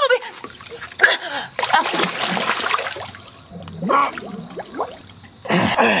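Water splashing and sloshing in irregular bursts as a person moves in it, with short vocal sounds between; the loudest splash comes near the end.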